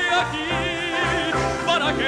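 A male solo singer performing a dramatic Spanish ballad, holding notes with wide vibrato over a live orchestral accompaniment.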